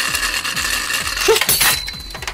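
Toy spinning top whirring steadily as it spins in the centre hollow of a handheld plastic battle dish. About one and a half seconds in, the whir stops and a few clicks follow as the top leaves the dish.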